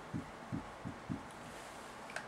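Four faint, short, low knocks of a marker writing on a whiteboard, spaced a bit under half a second apart.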